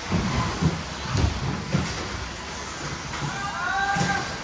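Electric 2WD radio-control buggies racing, their motors whining and rising and falling in pitch as they speed up and slow down, with scattered knocks from the cars on the track.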